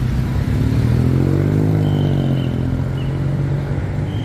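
A motor vehicle engine running close by in street traffic. Its note rises and then falls over a couple of seconds and is loudest about a second or two in.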